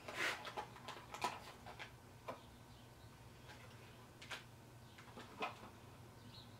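Faint rustling and clicks of small plastic packaging being opened by hand, busiest in the first couple of seconds, then a few separate clicks.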